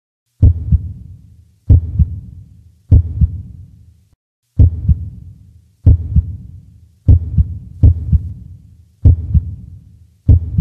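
Sound-effect heartbeat: slow, deep double thumps (lub-dub) about every 1.2 seconds, each with a low rumble that dies away, with a short break just past the four-second mark.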